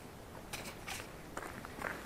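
Faint handling noise: a few light clicks and rustles, about half a second apart, as a hand touches and moves the camera.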